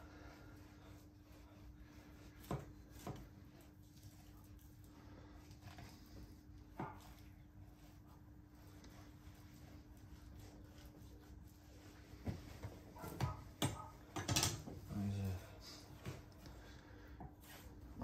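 A butcher's knife slicing through beef steaks on a wooden chopping board: quiet cutting with scattered soft knocks and taps as the knife and meat meet the board, more of them in the second half. A faint steady hum runs underneath.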